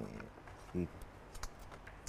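A pause in a man's speech: low room tone, a brief hum of his voice a little under a second in, and a few faint clicks in the second half.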